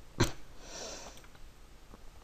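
A single sharp click, then a short sniff through the nose.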